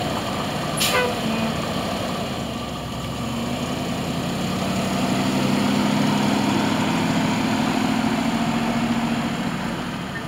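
Engine of a medium-duty tandem-axle grain truck running as the truck pulls away and drives past, its steady pitched note growing louder toward the middle and falling off near the end. There is a short sharp hiss about a second in.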